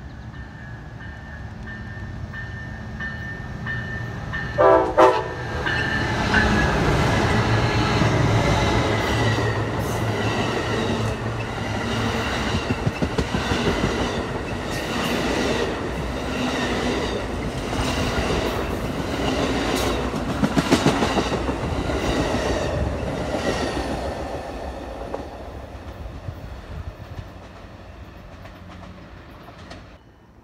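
Amtrak Superliner passenger train approaching and passing close by. A short horn blast comes about five seconds in, then the locomotive and a long string of bilevel cars go by with a rumble and a rhythmic clickety-clack of wheels over rail joints, fading out near the end.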